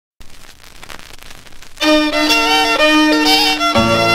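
Surface crackle of a 1957 45 rpm vinyl single in the lead-in groove. Then, a little under two seconds in, a country fiddle plays the song's intro, and the fuller band with bass joins near the end.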